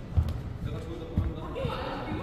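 Two dull thuds on the hall's wooden floor, about a second apart, against background chatter in a large echoing hall.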